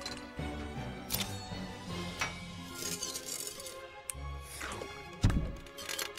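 Background music with glass clinking and shattering, as potion bottles fall and break. There are several sharp hits, and the loudest crash comes about five seconds in.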